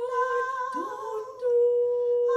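Three women's voices singing unaccompanied, holding long sustained notes; about halfway through one voice slides up into its note, and the sound grows louder shortly after.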